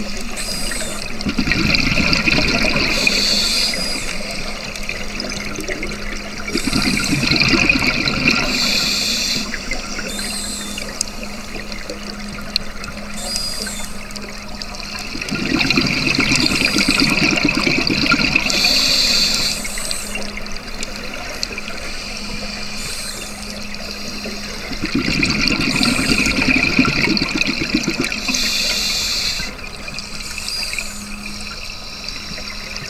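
A scuba diver breathing through a regulator underwater. There are four long bubbling exhalations, each a few seconds long, with quieter stretches between them, over a steady low hum.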